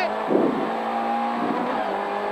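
Rally car engine heard from inside the cockpit, running hard at a steady pitch, with two short rough noises, one about a third of a second in and another around a second and a half.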